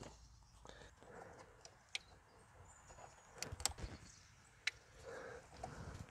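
Faint, scattered clicks and light taps of hands and tools working at the coolant hoses and hose clamps on a throttle body in an engine bay, with a small cluster of taps a little past the middle.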